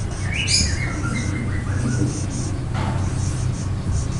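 Dry-erase marker squeaking and scratching on a whiteboard as words are written, with short chirp-like squeaks and strokes, over a steady low hum.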